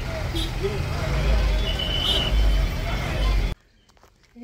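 Street traffic noise: a steady low rumble of vehicle engines with faint background voices and a short high-pitched beep about two seconds in. It cuts off abruptly near the end.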